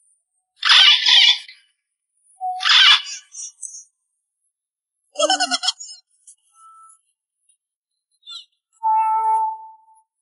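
A string of short comedy sound effects edited in over silence: two brief hissy bursts in the first three seconds, a short buzzy pitched effect about five seconds in, and a steady beep-like tone near the end.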